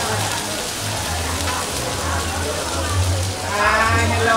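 Food sizzling on a large flat iron griddle, a steady hiss under crowd chatter, with a low uneven rumble underneath; a voice comes up clearly near the end.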